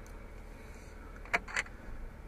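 Low, steady hum inside a pickup truck's cab, with two short clicks close together about a second and a half in.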